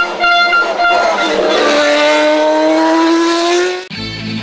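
Single-seater race car engine at high revs, held with brief breaks in the first second, then rising steadily in pitch as the car accelerates. It cuts off suddenly just before the end.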